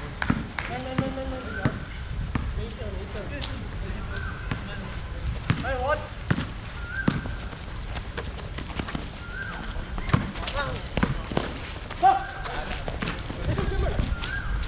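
A basketball bouncing irregularly on an outdoor concrete court during a pickup game, among players' shouts and calls.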